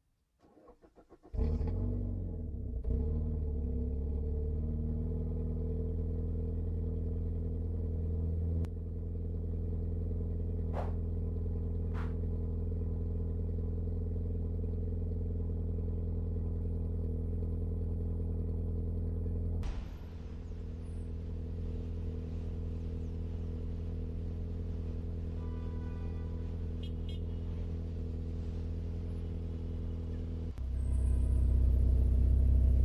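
Car engines idling in stopped traffic: a steady low hum that starts a little over a second in and shifts in tone twice, at about 9 and 20 seconds in. A couple of brief higher tones sound around 11 and 12 seconds in, and a few short faint tones come near the end.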